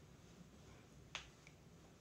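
A single short, sharp click about a second in, over near-silent room tone.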